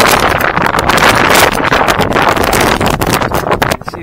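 Wind buffeting the microphone in a loud, gusty rush that drops away just before the end.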